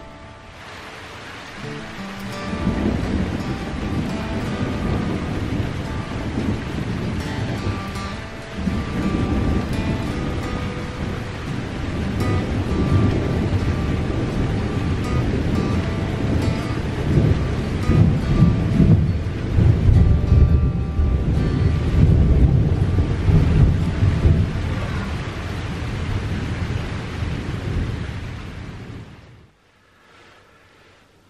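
Thunder rumbling over rain in a thunderstorm, building about two seconds in, loudest in the second half, then fading away near the end.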